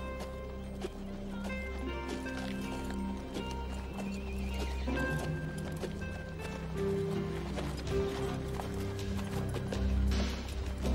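Film score music playing over horses' hooves clip-clopping on a dirt street, with a horse whinnying.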